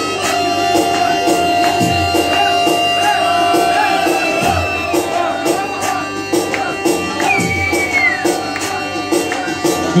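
Live band playing an instrumental passage of upbeat Albanian wedding music: a held, gliding lead melody over a steady drum beat.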